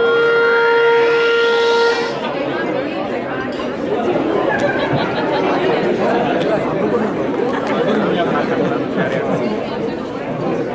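Audience chatter filling a large hall. In the first two seconds a steady electronic tone with a rising sweep over it plays, then cuts off suddenly.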